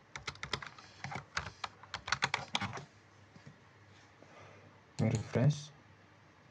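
Computer keyboard typing, a quick run of key clicks for about three seconds. A short burst of voice comes near the end and is the loudest sound.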